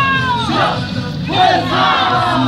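Tinku dancers shouting group cries that fall in pitch, one at the start and another about a second and a half in, over music.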